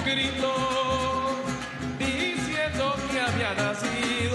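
Live Latin American band music: a male lead singer with backing voices, over a small strummed guitar and hand-played drums, with a steady low beat.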